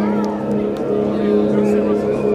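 A live rock band's amplified instruments holding one steady droning note through the PA as a song's intro begins, no drums yet; faint crowd voices over it.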